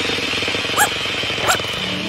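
Cartoon sound effect of a balloon being blown up: a steady, buzzy, hissing inflation sound. Over it, a cartoon puppy gives two short rising yelps, about two-thirds of a second apart.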